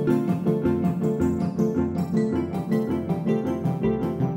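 SynthMaster synth playing a quick piano-like pattern of short repeated notes, run through the AUFX Dub stereo tape-style delay so that echoes of the notes ring on behind them.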